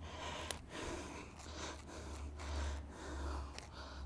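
A cut strip of grass sod pulled up by hand, its roots tearing and the grass rustling softly in several swells.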